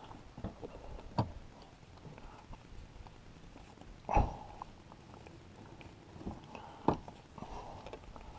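Gloved hands handling the throttle position sensor wiring connector and pulling out the safety pins used as probes: a few faint clicks and small knocks, the loudest about four seconds in. The engine is not running.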